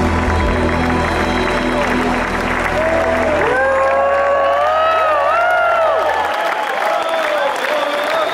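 A live rock band ends a song: the final chord is held with bass and drums until it cuts off about six seconds in. Over it the crowd applauds and cheers, and a voice calls out long sliding notes.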